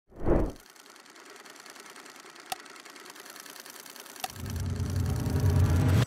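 Sound design for an animated logo ident: a low boom, then a fast, even mechanical ticking with two sharp clicks, and a deep rumble that swells over the last second and a half before cutting off suddenly.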